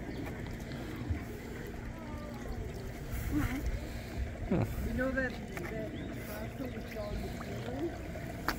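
Water flowing steadily along a wooden gem-mining sluice trough, with children's voices murmuring quietly over it a few times.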